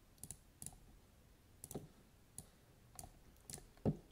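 Faint, irregular computer mouse clicks, about seven over four seconds.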